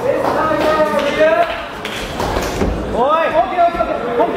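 Men's voices calling out across a large hall, with a low thump about two and a half seconds in.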